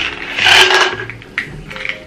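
A plastic supplement bottle being handled: a loud rasping scrape and then a few light clicks.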